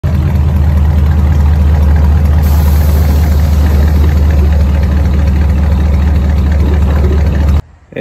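Mid-1950s Buick's engine idling with a loud, low, steady exhaust note that cuts off suddenly near the end.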